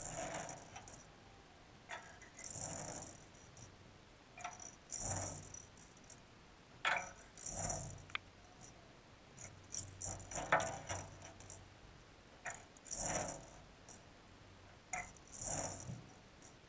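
Halco RMG Scorpion minnow lure pulled through bathtub water in short pulls, each stirring a brief burst of swishing, rattly water noise, about every two and a half seconds.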